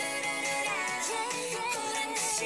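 Recorded pop song playing: a woman's voice sings a gliding melody over steady backing instruments.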